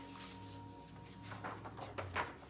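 A sheet of paper being creased flat by hand on a wooden table and then unfolded, a faint rustling that grows louder in the second half.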